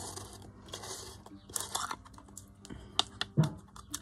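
Plastic screw lid being twisted and pulled off a small jar of acrylic paint: scattered scrapes and small clicks, with a couple of sharper clicks about three seconds in.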